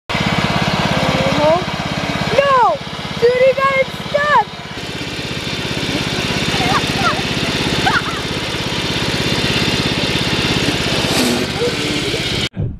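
Cub Cadet riding lawn mower's engine running steadily, with a few short shouts from voices over it.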